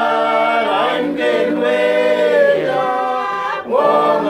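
Mixed group of men and women singing together unaccompanied, with long held notes and a brief break for breath about three and a half seconds in.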